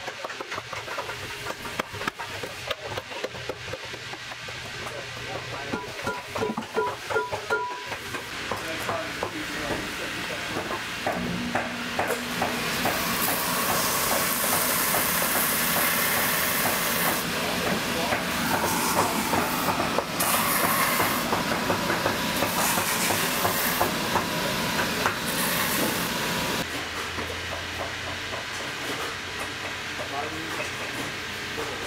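A cobbler's hammer tapping on a leather boot sole in a quick irregular run of knocks. From about twelve seconds in, a bench finishing machine's spinning abrasive wheel grinds the sole edge: a loud, steady rasp with hiss that stops a few seconds before the end, leaving a low hum.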